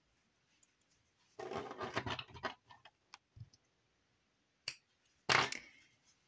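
Crochet hook and yarn handled against the crocheted fabric while an end is woven in: soft rustling and scratching in two spells, one about a second and a half in and a louder, shorter one near the end, with a few small clicks between.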